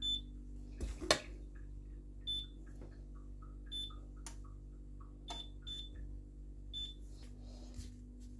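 Electric hob's touch-control panel beeping as it is switched on and its setting chosen: six short, high beeps spread over several seconds. A sharp knock comes about a second in, with a few fainter taps.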